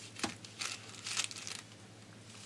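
Hands handling thin wire and LED leads on a sheet of paper: a few short crinkling rustles and small clicks.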